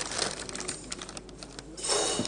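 Irregular light clicks and taps in a room, with a louder noisy burst near the end.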